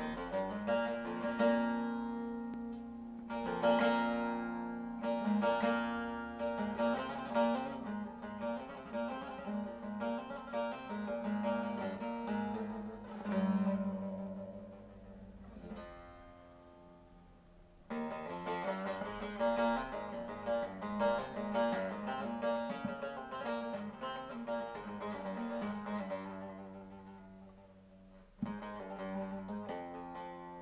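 Long-necked bağlama (saz) played solo: a plucked and strummed folk melody over a steady low drone from the open strings. The playing dies away around the middle, starts again with a sharp stroke about 18 seconds in, fades once more and picks up with another sharp stroke near the end.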